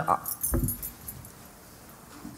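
A pause in a woman's speech. The last word breaks off, and about half a second in there is a soft low thump with faint light clicking. Quiet room tone follows.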